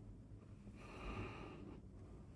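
A faint breath near the microphone: a single soft exhale lasting about a second, in the middle.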